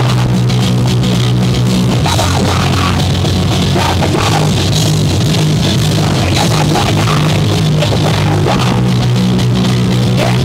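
Punk-thrash rock band playing live: distorted electric guitar and bass guitar over a fast drum kit beat, with the bass line changing note every second or so.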